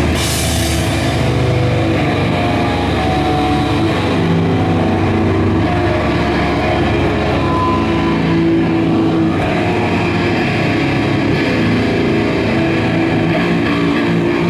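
Live band of electric guitar, bass guitar and drum kit playing loud rock, continuous throughout. Bright cymbal crashes ring out at the start and fade about a second in.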